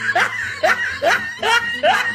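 A person laughing in short repeated bursts, about five in two seconds, each rising in pitch, like snickering.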